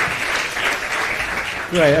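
Audience applauding, with a man's voice coming in near the end.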